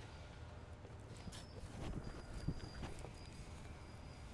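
Faint handling noise: a few light, scattered knocks and rustles as a measuring tape is moved and wrapped around a bonsai tree's trunk, most of them about midway through.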